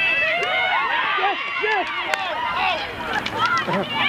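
Field hockey spectators shouting and cheering over one another, many excited voices at once, with a few sharp clacks of hockey sticks.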